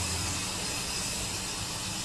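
Steady background hiss in a pause between spoken sentences, with a low hum that stops shortly after the start.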